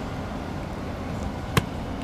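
A football snapped back to the kneeling holder smacks into his hands once, sharply, about one and a half seconds in, over a steady background hum.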